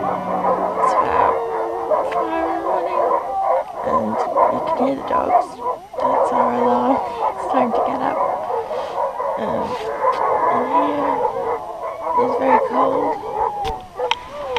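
A team of Alaskan Malamutes howling together in chorus: many overlapping, wavering howls, heard from inside a tent.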